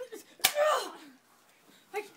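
A single sharp smack about half a second in, followed at once by a short vocal cry falling in pitch.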